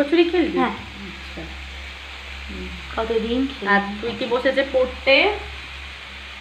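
Potato and green bean bhaja sizzling steadily in oil in a wok. A voice speaks briefly over it at the start and again from about three seconds in.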